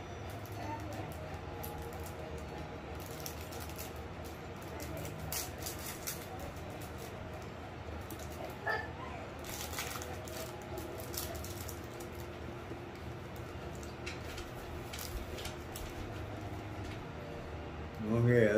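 Quiet room tone with a steady low hum, broken by a few soft clicks and crinkles of a foil snack wrapper being handled in the middle stretch, and one short squeak about halfway through.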